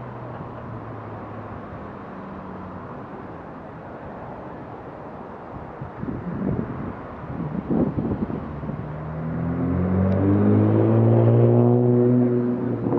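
Street traffic passing through an intersection, with a car engine close by speeding up in the last few seconds, its pitch slowly rising and getting louder.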